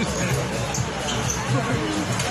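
Crowd chatter and voices around an outdoor basketball court, with a basketball being dribbled on the court surface.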